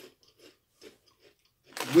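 A few faint crunches of spicy corn chips being bitten and chewed, spaced apart. A man's voice starts near the end.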